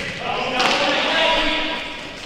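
Live game sound of an indoor futsal match in an echoing sports hall: a ball struck once about half a second in, over a steady haze of hall noise and voices that fades toward the end.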